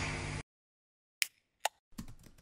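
The last of a music jingle cuts off half a second in; after a short silence come three sharp single clicks about half a second apart, computer-keyboard keystroke sounds as a search word starts to be typed.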